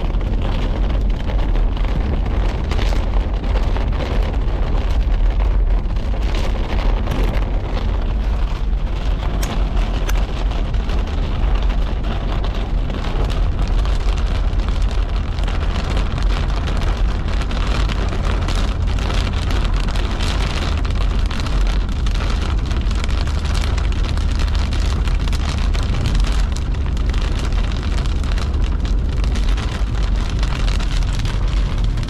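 Heavy rain pelting a car's windshield and roof in a thunderstorm core, a dense steady patter full of sharp individual drop strikes, over a steady low rumble.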